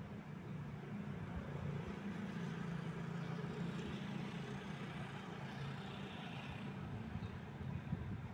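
Low rumble of a motor vehicle in the background, with a hiss that swells and eases over a few seconds, as of a vehicle passing.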